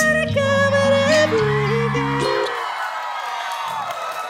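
Live male vocal holding a high final note over an R&B backing track as the song ends. The bass steps down and stops about two and a half seconds in, leaving the held note and crowd noise.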